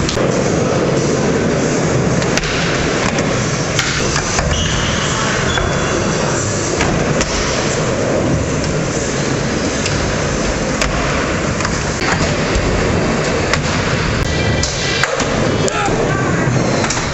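Skateboards rolling on a concrete skatepark floor, with scattered sharp clacks of boards hitting and sliding on ledges, several of them close together near the end.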